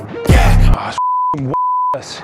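Rap music with a heavy bass hit, then the track cut out and replaced by two short, steady 1 kHz bleeps, censor bleeps over a word, with a brief vocal fragment between them.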